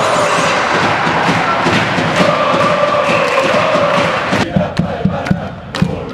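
Ice hockey fan section chanting together in an arena, over a steady beat. A little over four seconds in, the sound cuts abruptly to a duller recording, where the beats stand out more sharply.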